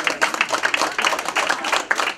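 A small crowd applauding: many quick, uneven hand claps.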